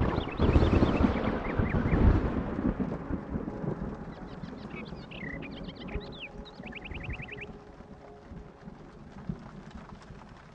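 A roll of thunder breaks in at once, loudest over the first two seconds and fading away over the next few, over steady rain. Birds then chirp, ending in a quick run of about eight rapid chirps around seven seconds in.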